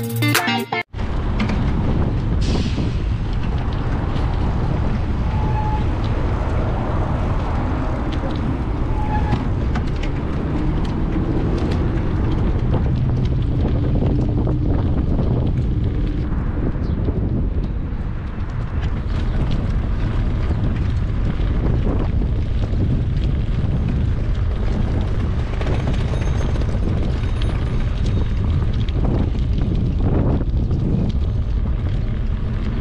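Wind buffeting the microphone of a camera on a moving bicycle, a dense steady rumble. Background guitar music cuts off about a second in.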